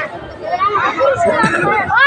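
Chatter of several people talking at once, voices overlapping.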